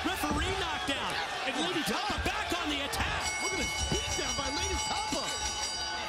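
Thuds of bodies and feet on a wrestling ring mat during a brawl, under shouting voices.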